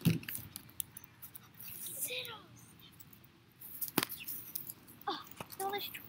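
Handling noise from a handheld camera being moved: a thump at the start, then scattered small clicks and rustles, with one sharp click about four seconds in. Faint children's voices come in briefly.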